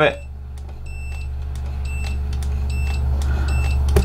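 A multimeter's continuity beeper sounding in a series of short beeps, about one a second, cutting in and out as the cable is moved: a break in the power adapter's data wire. A steady low hum grows louder underneath.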